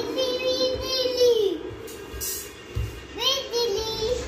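A young child's high voice singing long, drawn-out notes. The first note bends down and fades about a second and a half in, and another starts near the three-second mark and is held. A few low, dull thumps sound underneath.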